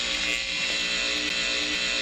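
An electrical buzz sound effect standing for a short-circuit fault on the feeder. It is loud, steady and harsh.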